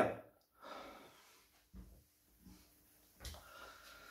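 A man's faint breaths through the nose, three or four short puffs, in a pause between angry outbursts.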